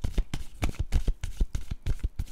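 A deck of tarot cards being shuffled by hand: a rapid, even run of short card slaps and clicks, about eight a second.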